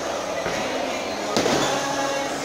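Bowling alley din: a bowling ball rolling down the lane over background chatter, with one sharp crash about one and a half seconds in.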